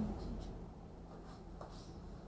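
Faint whispering: a few soft hissy sounds over a low steady room hum.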